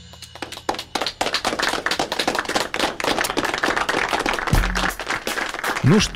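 A small group of people clapping, dense and irregular, starting about half a second in as the song's last chord dies away.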